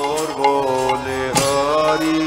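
Kirtan: a man leads the chant in long, held sung notes into a microphone, with a hand-cymbal strike about one and a half seconds in.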